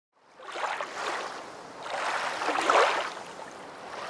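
Lake water lapping and washing in swells that rise and fall, loudest about two and a half seconds in.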